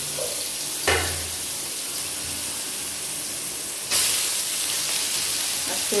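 Food frying in a pan: a steady sizzle with a short clink or scrape about a second in, the sizzle suddenly growing louder about four seconds in.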